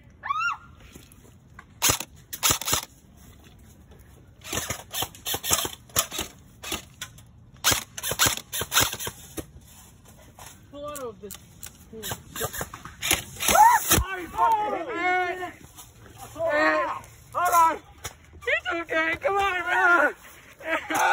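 Airsoft guns firing: scattered sharp cracks in quick runs for several seconds, then shouting voices, with one loud bang about fourteen seconds in.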